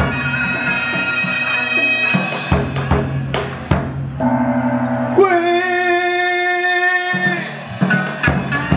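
Vietnamese ritual ceremonial music: a double-reed oboe (kèn) plays long, reedy held notes, with a few drum and gong strokes about halfway through.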